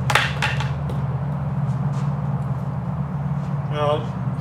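A tennis racket dropped onto a hard floor, landing with two or three quick clattering knocks just after the start, over a steady low hum.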